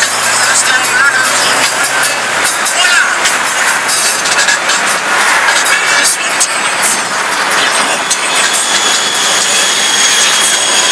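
Traffic and road noise heard from a car driving through town streets, with voices mixed in. A low steady hum stops about two and a half seconds in.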